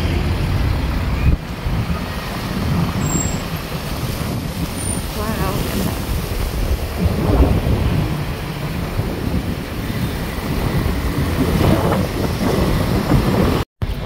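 Wind buffeting the microphone: a loud, uneven low rumble with a rushing haze over it, briefly cutting out just before the end.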